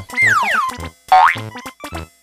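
Two cartoon pitch-glide sound effects over bouncy children's music with a steady beat: a falling whistle-like glide near the start, then a quick rising one just after a second in.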